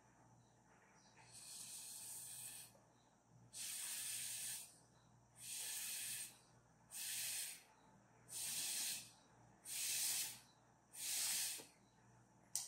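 Seven puffs of breath blown through a plastic drinking straw, each a short hiss, pushing watery gouache paint across paper in straw blow-painting. The first puff is the longest.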